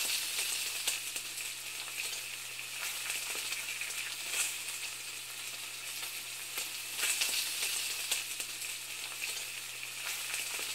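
Food sizzling and frying in a hot pan: a steady hiss with scattered crackles and pops.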